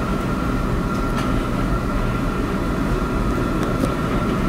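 Steady low background rumble with a thin, even hum above it and no distinct events.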